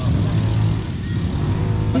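Small motor-vehicle engine running steadily nearby, a low even hum.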